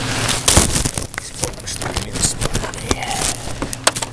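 Plastic garbage bag rustling with irregular clicks and knocks as trash is handled by hand at the curb.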